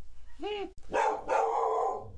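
Pet dog barking at a neighbor's dog: one short bark about half a second in, then a longer, rougher run of barking.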